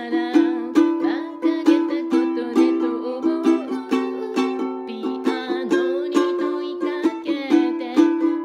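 Makala clear plastic ukulele strummed in a steady rhythm, chords ringing with a regular strum stroke every half second or so, in a small room.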